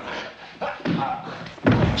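Wrestlers' bodies thudding on the ring mat during a grappling struggle, with grunts and strained voices. The heaviest, deepest thud comes near the end.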